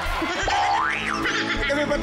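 A comic studio sound effect: a whistle-like tone that rises steeply in pitch about half a second in, then drops back down, over background music with a steady bass.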